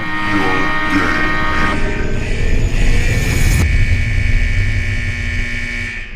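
Produced electronic sound effect: a deep rumbling drone under several held high tones that bend down in pitch at the start. The upper tones cut off about three and a half seconds in, leaving a lower hum that fades near the end.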